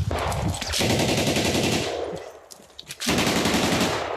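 Automatic rifle fire in two long bursts of rapid shots: the first runs about two seconds, and after a brief lull a second burst starts about three seconds in.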